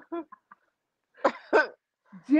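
A woman's breathless laughter: a few short gasps, a brief silence, then two sharp breathy bursts past the middle.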